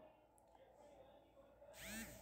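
Near silence, then near the end a brief, rising scraping noise as a sheet of corrugated cardboard slides over a cardboard box.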